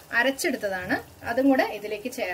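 A woman's voice talking, with no other sound standing out.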